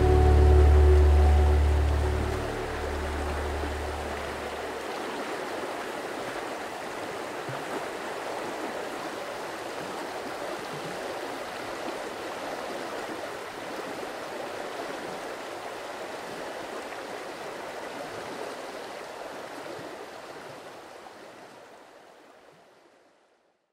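Background music fades out over the first few seconds, leaving the steady rush of flowing river water, which fades out near the end.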